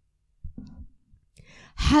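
A woman's breath drawn into a close handheld microphone during a pause in speech. A brief faint low sound comes about half a second in, and a soft intake of breath comes near the end, just before her voice starts again.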